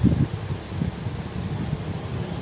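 Wind buffeting the microphone: an uneven low rumble, strongest at the very start.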